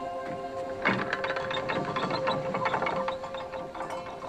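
A television drama's soundtrack: a held music tone under a rapid run of fine ticking that starts about a second in and fades near the end.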